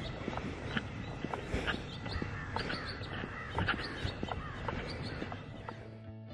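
Birds chirping and calling in the background, with a person's footsteps on a paved road.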